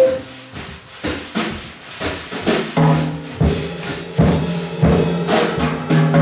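Live jazz band: the drum kit plays a short break alone, a run of sharp drum and cymbal strikes, and about three seconds in the upright bass and the other instruments come back in under the drums.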